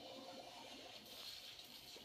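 Near silence: a faint, muffled television soundtrack playing across a small room, barely above room tone.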